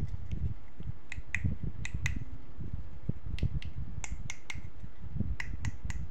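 Small plastic clicks and taps from a toy lipstick and its cap being handled, pulled apart and fitted together: about a dozen short, sharp clicks at uneven intervals, over a low rumble of handling noise.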